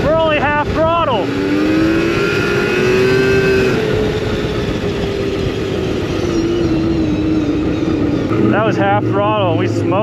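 Yamaha SRX 700 snowmobile's three-cylinder two-stroke engine running under throttle as the sled drives. Its pitch dips and rises in the first few seconds, then slowly falls. A voice calls out briefly near the start and again near the end.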